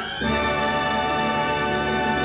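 Orchestral end-title music from a 1940s film score: a new chord comes in about a quarter second in and is held steadily by strings and brass.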